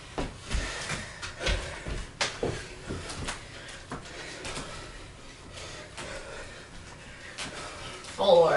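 Bodies and push-up handles moving on a hardwood floor during push-ups and squats: scattered light knocks and thumps, busiest in the first few seconds and sparser after.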